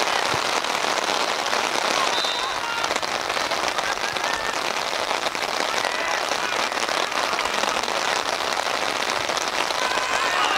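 Rain falling steadily: an even hiss of drops with fine ticks throughout, and faint distant voices now and then.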